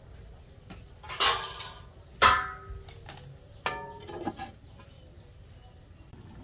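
Aluminium pot lid clanking against the rim of the aluminium cooking pot three times as it is set on, each knock ringing briefly; the second knock is the loudest.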